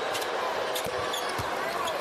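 Steady arena crowd noise with a basketball bouncing on the hardwood court a few times.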